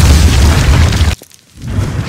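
Logo sound effect of a stone wall blasting apart: a loud, deep boom that cuts off suddenly after about a second, then crumbling, shattering debris rising near the end.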